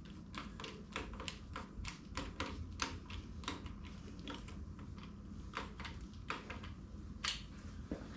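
Piston ring compressor being tightened around a Chevy 350 piston with its ratchet key: an irregular run of small, sharp ratchet clicks, about three a second, as the rings are squeezed into their grooves before the piston goes into the bore. A faint steady hum lies underneath.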